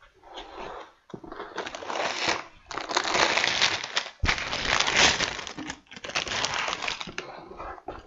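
Plastic bags of LEGO pieces being pulled from a cardboard box and handled: crinkling plastic in several bursts of a second or two each, with short breaks between.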